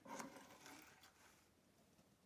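Near silence, with a faint soft rustle in the first second or so as a freshly carded wool batt is lifted and handled.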